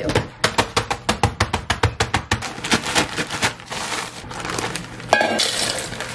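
Oreo cookies being smashed inside a sealed plastic zip-top bag: a fast run of sharp crunching strikes, several a second, for about three and a half seconds. Near the end there is one sharp knock, then the crinkling rustle of the plastic bag as the crushed crumbs are emptied into a stainless steel mixing bowl.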